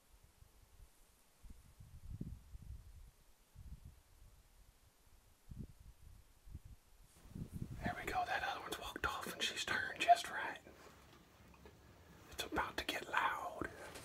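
A man whispering in two stretches, from about seven seconds in and again near the end. Before that, only faint, scattered low thumps and rumbles.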